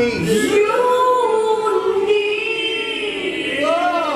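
A woman singing alone into a microphone with no band behind her: one long held note that wavers and bends in pitch, then a short phrase that swoops up and back down near the end.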